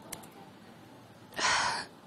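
A person's sharp intake of breath, about half a second long, a little past the middle, over a faint room hiss.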